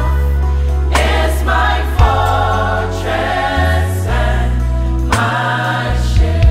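Gospel choir and lead singer singing a worship song over keyboard accompaniment, with deep held bass notes that change pitch a few times and a few sharp hits.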